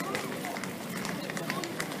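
Footsteps of passers-by on block paving: hard-soled shoes and boots striking the ground in quick, overlapping steps, with the voices of people in the street behind.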